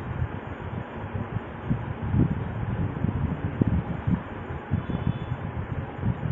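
Steady background hiss with irregular low rumbles and bumps, typical of moving air from a fan buffeting the microphone.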